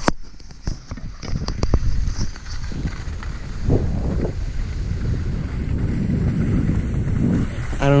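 Knocks and rubs from the camera being handled during the first couple of seconds, then a steady rumble of wind buffeting the microphone as the skier slides over wet snow.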